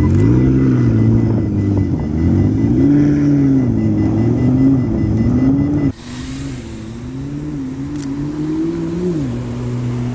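McLaren P1's twin-turbo V8 revving, its pitch rising and falling again and again. About six seconds in the sound cuts to a quieter engine note that wavers, drops and settles into a steady low tone near the end.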